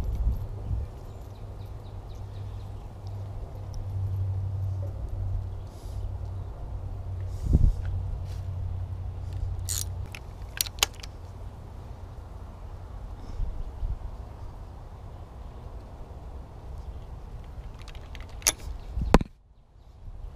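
A ratchet wrench tightening a new spark plug into an outboard engine's cylinder head, with a few separate sharp metallic clicks over a steady low rumble.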